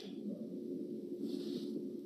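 Faint steady hum with a thin low tone running under it: the background noise of a recorded conversation in a pause between speakers, with a faint soft hiss a little past the middle.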